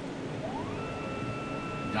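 Stepper motors of a NymoLabs NBX-5040 CNC router whining as an axis moves. The pitch rises about half a second in as the carriage speeds up, then holds steady.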